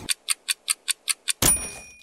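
Outro logo sound effects: a stopwatch ticking about five times a second, then a loud crash with a metallic ring that fades out, about one and a half seconds in.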